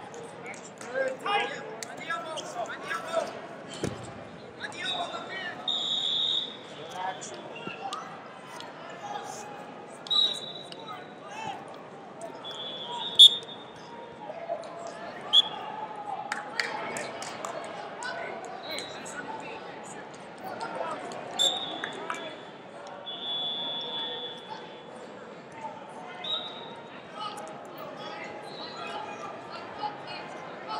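Echoing ambience of a busy wrestling tournament hall: crowd chatter and shouts, with short high referee whistle blasts every few seconds from the mats and a few sharp thuds.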